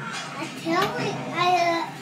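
A young child talking in a high voice.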